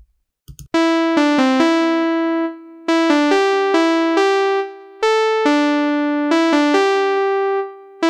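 Synthesizer lead (GarageBand's 'Simple Lead' patch) playing a song's melody on its own, one bright note after another. It starts just under a second in and runs in three phrases with short breaks between them.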